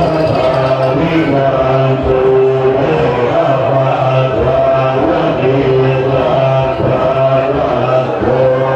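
Buddhist chanting in low voices, held on long, steady notes.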